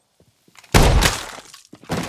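A sudden loud crash from an action film's sound mix, breaking and shattering in character, comes after a near-silent pause about three quarters of a second in and dies away over half a second. A second, shorter hit follows just before the end.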